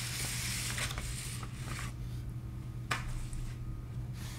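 Paper rustling and sliding as large prints are drawn out of a paper portfolio envelope, with a single sharp tap about three seconds in, over a low steady hum.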